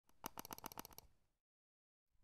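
A rapid run of about ten sharp clicks within the first second, a sound effect for an animated text-logo intro.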